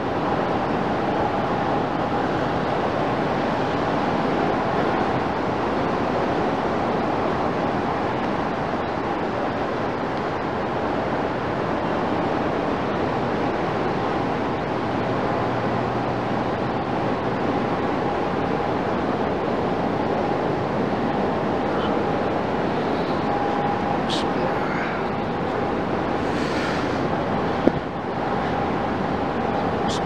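Steady rushing background noise of a large stone-and-plaster mosque hall, with a faint steady hum and a single sharp click about two-thirds of the way through.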